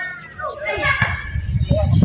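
Shouted calls from players on an outdoor basketball court, with a few short sharp knocks in the second half.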